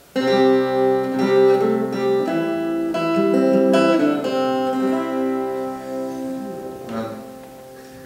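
Solo acoustic guitar: a short phrase of plucked notes and chords that ring out and slowly die away, with one last soft note near the end.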